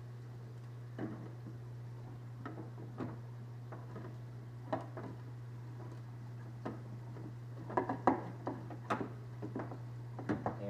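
Scattered light knocks and clicks of a clear plastic filter canister being handled and fitted to a reactor housing, with a cluster of sharper knocks near the end. A steady low hum runs underneath.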